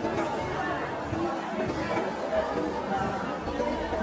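Many people talking at once: a steady murmur of indistinct, overlapping conversation from a room full of guests.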